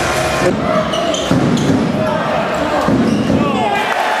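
Basketball bouncing on a hardwood court, giving two dull thuds, with short squeaks near the end.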